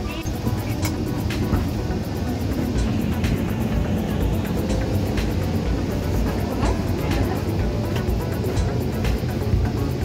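Steady low rumble of an airliner cabin at boarding, with music playing over it and a few light knocks.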